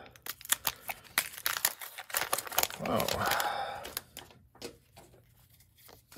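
A pack of baseball cards being torn open by hand: a quick run of sharp tearing and crackling over the first two seconds or so, thinning into a few softer clicks as the cards come out.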